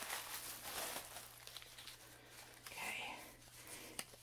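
Paper yarn ball bands and a plastic bag rustling and crinkling as they are handled, loudest in the first second or so.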